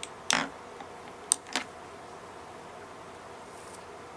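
Two short, sharp clicks about a quarter second apart, a little over a second in, from small objects being handled on a table, over a steady low hiss of room tone.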